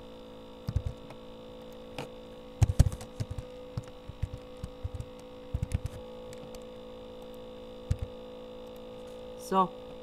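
Steady electrical mains hum on the recording, with clusters of short computer mouse and keyboard clicks during on-screen editing. The loudest clicks come about three seconds in, and one lone click comes near eight seconds.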